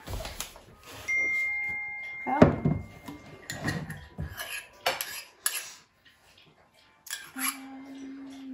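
A metal spoon clinking and scraping against a metal measuring cup as soft butter is scooped and pressed in, a string of short clinks with the loudest about two and a half seconds in.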